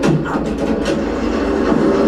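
TV drama soundtrack from a scene inside a railway train compartment: a steady low drone with a few clacks and rattles, opening with a quick falling swoosh.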